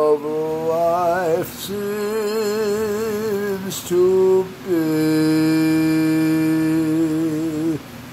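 A man singing a show tune unaccompanied in long, drawn-out notes with a wide vibrato: a rising slide into the first note, two shorter held notes, then a steady note held about three seconds near the end.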